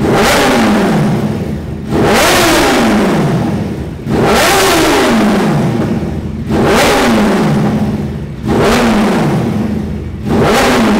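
Yamaha FZ1's 998 cc inline-four engine, really loud, revved in sharp throttle blips while standing still: five blips about two seconds apart, each jumping up suddenly and falling back toward idle.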